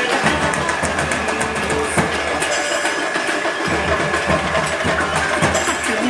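Music playing loudly over a running vehicle engine's low hum, with scattered sharp clicks.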